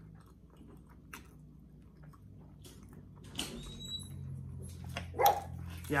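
A pet dog: a thin high whine partway through, then one sharp bark about five seconds in.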